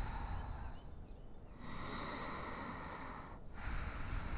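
A person breathing slowly and deliberately while holding a yoga pose. An airy exhale of about a second and a half begins partway through, and the next breath starts near the end.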